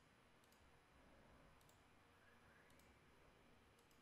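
Near silence: faint room tone with a handful of soft computer mouse clicks spread through.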